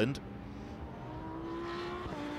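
Lamborghini Huracán GT racing car's V10 engine running at speed on track, heard as one steady note that slowly rises in pitch and grows a little louder as the car comes nearer over the second half.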